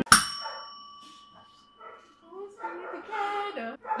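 Tabletop service bell struck once to buzz in with an answer; a bright ring that fades away over about two seconds.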